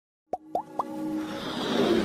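Animated logo-intro sound effects: three quick pops, each sliding up in pitch, then a swelling whoosh that builds steadily louder.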